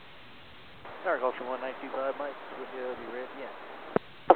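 Hiss of a VHF airband radio receiver, then a voice transmitting over the tower frequency from about a second in, with a sharp click near the end as the transmission keys off.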